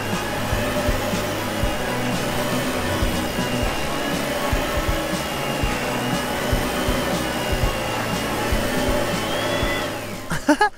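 Steady vacuum-cleaner whirring with a thin high whine that wavers slightly, from a toy upright vacuum being pushed over carpet. It cuts off just before the end. Background music plays underneath.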